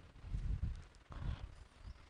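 Faint, soft low thumps and a few light taps as a person moves and taps at an interactive whiteboard.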